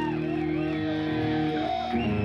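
Amplified electric guitars ringing out on long held notes, with a high tone wavering up and down above them.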